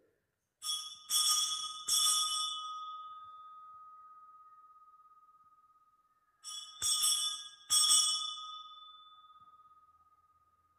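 Altar bells rung in two sets of three shakes, one set just after the start and one about six and a half seconds in, each set leaving a long ringing tone that slowly fades. They mark the elevation of the consecrated host.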